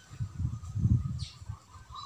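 Dull low thumps and rustling from a gloved hand pushing shallot bulbs into a tray of loose potting soil, with a faint thin call or squeak near the end.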